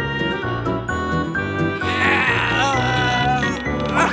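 Cartoon background music, and about two seconds in, a wavering, bleat-like cry from a cartoon character lasting about a second and a half.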